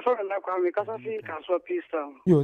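Speech heard over a telephone line: a caller's voice, thin and cut off in the highs, talking on air.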